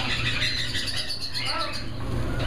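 Caged parrots and other pet birds chirping and calling, with one short whistled note about a second in, over a steady low hum.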